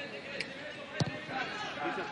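Stadium crowd and voices under a single sharp thud of a football being kicked about a second in.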